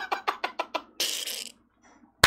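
A man laughing hard: rapid breathy bursts, about seven a second, fading over the first second, then one long breathy rush of air.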